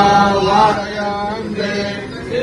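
Men chanting in long held notes, several voices together.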